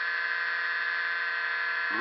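Reed-switched pulse motor running at a steady speed, its rotor and single drive coil making an even, high-pitched buzz.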